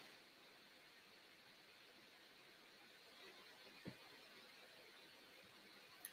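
Near silence: a pause in the online call with only faint background hiss and one tiny click about four seconds in.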